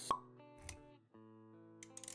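A short, sharp pop sound effect just after the start, over background music with held notes; a softer low thud follows about half a second later, and the music drops out for a moment about a second in.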